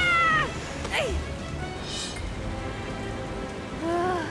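Cartoon young pteranodon's high cry that rises and then falls, followed about a second later by a short falling squeak, over steady rain and soft background music. Near the end comes another short pitched cry.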